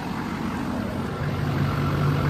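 Chevrolet Express's 6.6 L Duramax V8 turbodiesel idling steadily. About halfway through, a low hum grows stronger.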